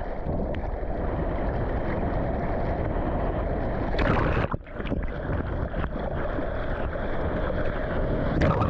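Rushing seawater and wind noise on an action camera's microphone as a surfboard moves through whitewater, a steady dense rush with a brief drop about halfway through.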